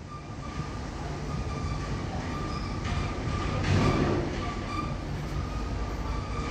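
Steady low background rumble with a faint high whine, swelling a little around the middle.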